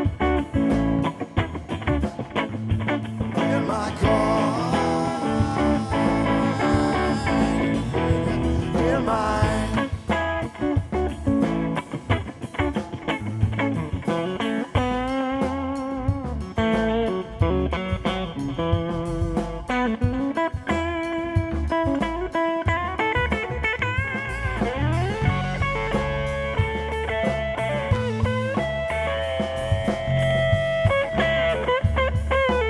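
Live band playing an instrumental stretch of a song: electric guitar lead over bass guitar and drums, with the guitar bending notes up and down through the second half.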